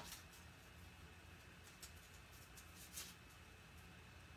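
Near silence, with a few faint small clicks and rustles as a mini glue dot is pressed under copper ribbon on a paper gift box.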